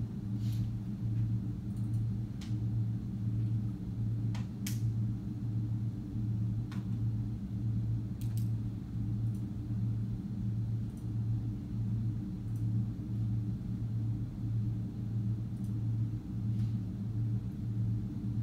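Steady low machinery hum that pulses evenly about one and a half times a second, with a few faint clicks.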